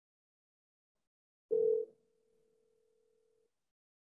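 Telephone ringback tone of an outgoing call: one ring, a steady low tone lasting about two seconds. It begins about a second and a half in, louder for the first moment. It signals that the called phone is ringing and has not yet been answered.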